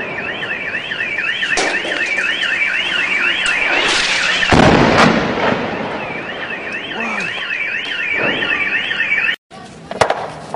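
An alarm siren warbling up and down about twice a second, with a loud boom about halfway through while the siren briefly drops out. The sound cuts off abruptly just before the end.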